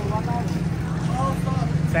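A nearby vehicle engine idling steadily with a low, even rumble, with faint talk over it.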